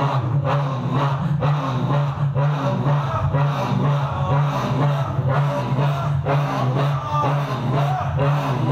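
Congregation of men chanting the dhikr "Allah" in unison: a loud, rhythmic, low drone of many voices with regular stresses.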